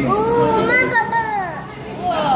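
Excited voices exclaiming in amazement, including a high-pitched child's voice in long rising-and-falling calls, dying down near the end.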